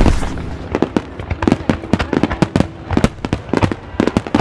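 Fireworks going off: a loud burst at the start, then a rapid, irregular series of sharp cracks and bangs.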